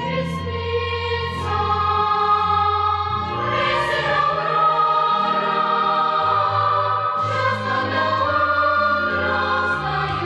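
Background choral music: a choir singing held chords over a low bass line.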